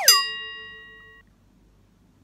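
Comic sound effect: a quick downward-sliding whistle that lands on a bell-like ding, which rings and fades out over about a second.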